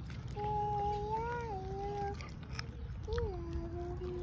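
German shepherd puppy whining in two long, drawn-out calls, the second dropping in pitch and then holding.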